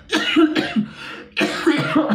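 A man coughing into a tissue held over his mouth, in two fits, the second starting about a second and a half in.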